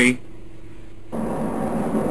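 Sound effect of a spacecraft shuttle moving under power: a quiet steady electronic hum, then about a second in a louder rushing rumble with a low drone starts and keeps going, as the shuttle is edged forward.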